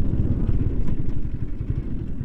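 KTM Duke 250's single-cylinder engine running at low speed as the bike rolls slowly, a low uneven rumble. The bike is running out of fuel and losing power, close to stalling.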